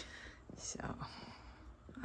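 Quiet stretch with a man's faint, near-whispered "so" about halfway through.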